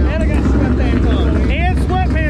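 People talking over a steady low rumble of vehicle noise.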